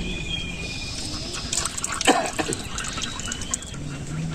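Small birds chirping in short, high calls near the start and again about three seconds in. Around the middle there are a few sharp clicks and one louder knock. Under this, a thin stream of cooking oil trickles into a metal wok.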